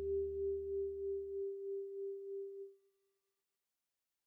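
The background music ending on a single held note with a slow waver, fading away about two and a half seconds in; lower bass notes under it stop abruptly about a second and a half in.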